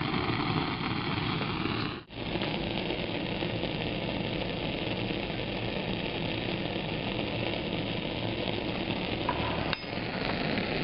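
Steady hissing rush of a lab heat source. Before a sudden break about two seconds in, it is a beaker of sodium hydroxide solution boiling hard; after the break, it is a Bunsen burner's gas flame burning under a beaker.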